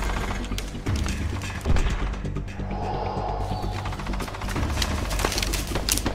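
Film soundtrack: a low, droning music score with scattered gunshots cracking over it, one sharper shot about two seconds in.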